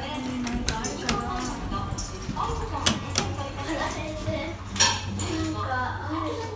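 Hitachi elevator car: button clicks and the doors sliding shut, a series of sharp metallic clacks with the loudest, longest one about five seconds in, over background chatter and music.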